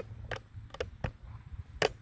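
A few short, sharp clicks, the loudest near the end, over a low rumble.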